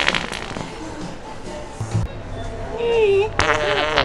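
Prank fart noise from a hand-held fart-making toy: a long, loud, buzzing fart with a wobbling pitch near the end, after a shorter one right at the start.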